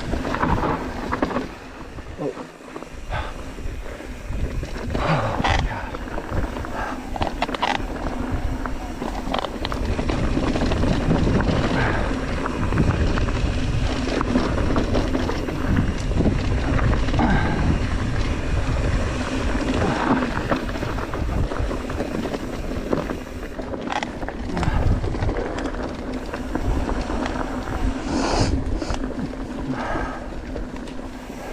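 Mountain bike riding fast down a loose, rocky dirt trail: tyres rolling over dirt and stones, with the chain and bike rattling over the bumps and wind buffeting the camera microphone.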